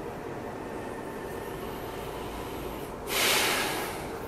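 A person's loud, breathy exhale, a sigh close to the microphone about three seconds in that fades over about a second: the sigh that follows emptying the lungs in a relaxation breathing exercise. Steady room noise runs underneath.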